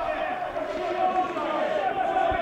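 Faint, indistinct voices over a steady hum that runs under the commentary audio.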